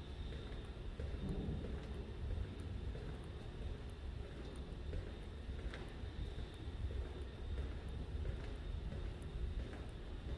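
A steady low rumble of building machinery or ventilation in a basement corridor, with a faint constant high whine and light, irregular ticks.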